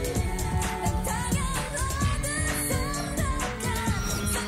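Korean dance-pop song: a woman's lead vocal over a steady beat.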